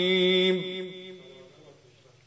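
A man's chanting voice holding a long final note, which stops about half a second in and dies away in the hall's reverberation, leaving near silence.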